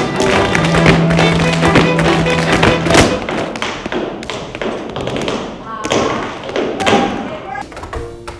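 Tap shoes striking a stage floor in fast rhythms over music. The taps are dense for the first three seconds. After an abrupt change about three seconds in, they come sparser against the music.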